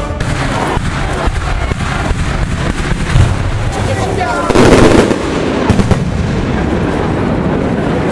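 Fireworks going off overhead: a rapid, irregular string of bangs and crackles, with the loudest burst about four and a half seconds in. Crowd voices carry underneath.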